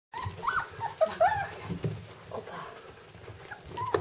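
Rhodesian Ridgeback puppies whining in short, high squeals that rise and fall in pitch, several of them in the first second and a half. Scattered soft knocks are heard in between.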